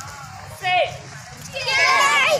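A group of karate students, children, shouting together as they strike: a short shout about halfway through, then a longer, louder one near the end.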